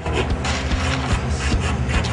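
Electric jigsaw running steadily as it cuts a hard eucalyptus beam, struggling to get through the dense wood, under background music.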